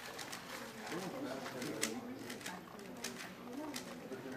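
Faint murmur of distant voices in a waiting area, with a few short, sharp clicks scattered through it.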